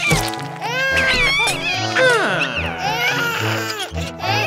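Voice-acted cartoon babies crying and squealing in high, wavering wails over light background music with a stepping bass line.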